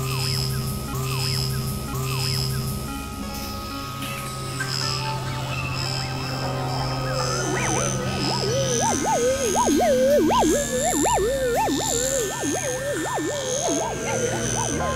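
Experimental synthesizer music: a low droning tone pulses on and off under a string of short, repeating high blips. About halfway through, a fast warbling, siren-like tone joins in, swinging up and down in pitch, and the music grows louder.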